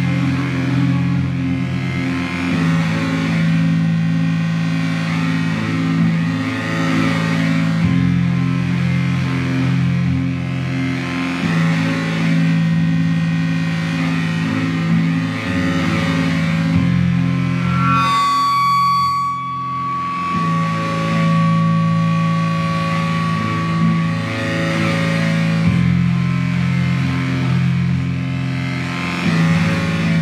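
Live experimental drone music: layered low sustained tones that shift to new pitches every few seconds under a pulsing note. Near the middle the low end drops out briefly and a high held tone sounds for several seconds.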